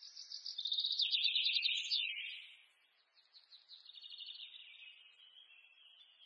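A small bird singing in rapid trills: a loud phrase stepping down in pitch over the first two seconds, then a softer trill from about three seconds in.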